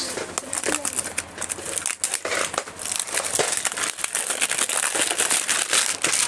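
Clear plastic packaging of toe rings being handled and opened: continuous crinkling and crackling of thin plastic, with many small clicks.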